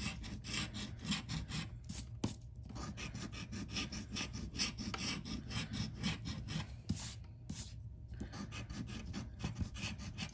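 A coin scraping the scratch-off coating off a lottery scratcher ticket in quick, rasping back-and-forth strokes, pausing briefly twice.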